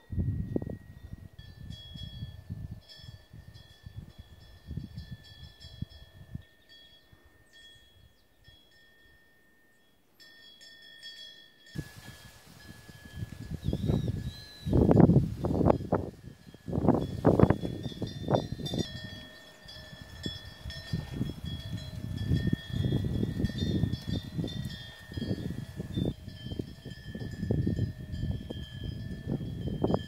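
Temple wind bells ringing on and on in a high, steady tone, with wind gusting and rumbling on the microphone. The gusts die down for a few seconds about a third of the way in, then come back stronger.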